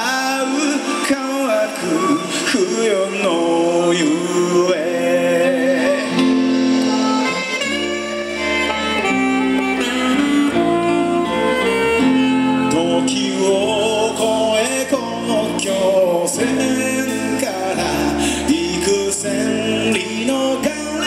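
Live band music: acoustic guitar and saxophone carry a slow melody over congas, with an electric bass line coming in about eight seconds in.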